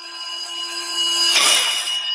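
Closing logo sting of an educational rap video: a shimmering chord of held high tones that swells into a whoosh about one and a half seconds in, then fades.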